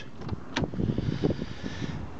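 A Saab 9-3 estate's rear door being opened: a latch click about half a second in, then rustling and handling noise on the handheld microphone as the door swings open.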